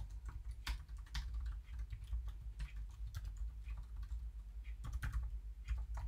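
Typing on a computer keyboard: irregular key clicks, with a steady low hum underneath.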